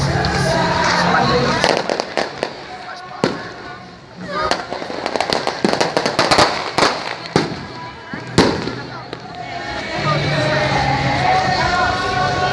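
Fireworks and firecrackers going off in an irregular string of sharp bangs for several seconds, the loudest bang near the end of the string. Music plays before the bangs begin and comes back after them.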